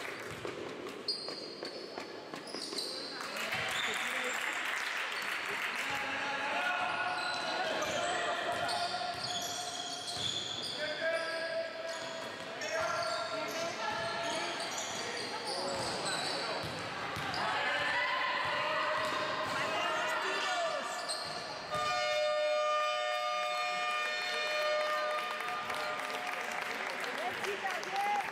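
Basketball game in a large gym: the ball bouncing on the wooden court, shoes squeaking, and players and coaches calling out, all with hall echo.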